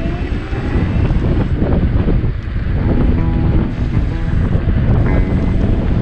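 Heavy wind buffeting the microphone on an electric scooter riding at speed, a loud, steady low rumble.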